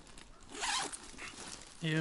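Zipper on a handbag being pulled open once, a short rasping run of about half a second.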